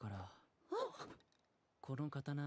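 Quiet character dialogue from an anime episode, low in the mix: a few short spoken phrases, one at the start, one about a second in, and one near the end.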